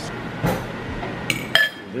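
Metal fork clinking against dishes: two short ringing clinks about a second and a half in.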